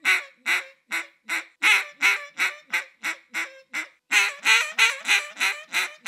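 Duck call blown in a Cajun squeal: two runs of quick, raspy hen-mallard quacks, about three a second, each run fading toward its end. The squealing quacks imitate a hen calling with food stuck in her throat, a finishing note meant to turn passing ducks in.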